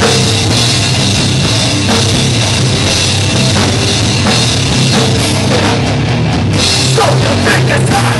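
A hardcore metal band playing live, loud and dense: electric guitars and a pounding drum kit in an instrumental stretch of the song, with no singing.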